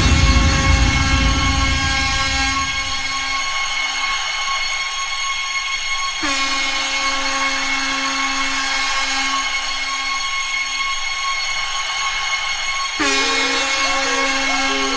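Dance-music breakdown: sustained synthesizer chords held with no drum beat, after the bass and beat fade out in the first two seconds. The chord changes about six seconds in and again near the end.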